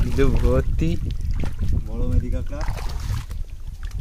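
A man talking in short phrases over a steady low rumble of wind on the microphone.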